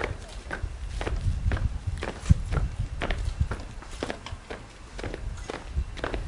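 Boots of a squad of uniformed honour guards marching in step on paving stones, with sharp footfalls about two a second.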